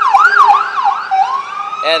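Ambulance siren passing, picked up by a doorbell camera's microphone. It sweeps quickly up and down in pitch about four times a second, then about a second in changes to a slow rising wail.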